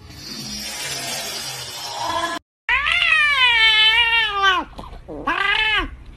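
Domestic cats: a hissing noise, then after a short break two drawn-out cat yowls, the first long with a wavering pitch and the second shorter.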